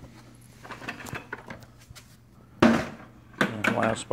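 A plastic bucket full of cast lead ingots is lifted off a bathroom scale and set down on brick pavers, with small clicks, then a loud clatter of ingots and bucket about two-thirds of the way through and another just before the end.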